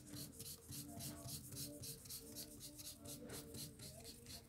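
Felt-tip highlighter scribbling back and forth on paper, a faint scratchy rhythm of about five strokes a second as a sheet is coloured in.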